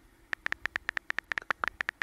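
Phone on-screen keyboard clicking as text is typed: a fast, uneven run of short ticks, one per key press, starting a little after the start.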